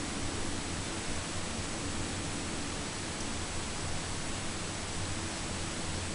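Steady hiss from the recording's own noise floor, with a faint high-pitched whine running through it; no distinct sound stands out.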